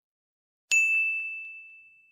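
A single bell-ding sound effect, struck once about two-thirds of a second in and ringing as one high tone that fades away.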